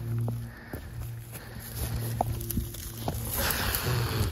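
Rocks and dry grass being handled: scattered small knocks, then a rustle of dry grass near the end, over a low steady hum.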